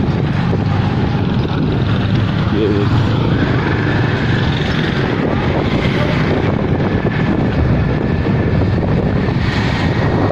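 Wind rushing over the microphone of a phone on a moving motorcycle, with the motorcycle's engine running underneath as a steady, loud noise.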